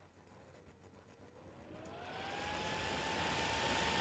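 A motor spinning up: a whine climbs in pitch over about a second and a half and then holds steady, over a rushing noise that grows louder.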